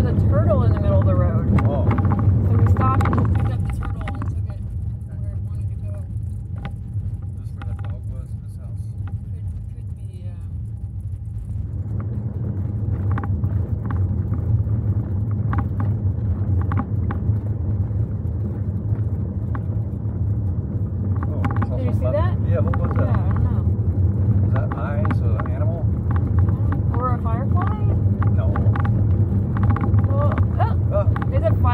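Car cabin noise while driving: a steady low drone from the engine and road. Indistinct voices come in over it at the start and again in the last third.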